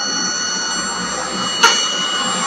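Vibratory stress relief machine's exciter motor running steadily with a whine, spinning up toward 5000 rpm to vibrate a metal workpiece for stress relief. A single sharp click about one and a half seconds in.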